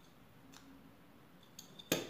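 Light metallic clicks as small pliers and a metal ring are handled: a few faint ones late on, then one sharper click near the end.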